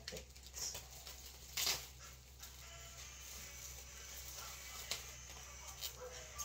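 Plastic cling wrap crinkling as it is pulled and pressed around wet hair, in a few short rustles, with the sharpest crackle about a second and a half in.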